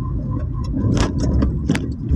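Car cabin noise while driving slowly: a steady low engine and road rumble, with two sharp clicks, one about a second in and one just before the end.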